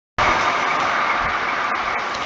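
A steady, fairly loud hiss of background noise with no speech: an even rush strongest in the upper-middle range, starting a moment after the clip opens.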